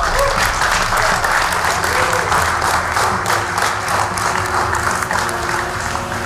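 A crowd applauding steadily, the clapping easing off slightly near the end.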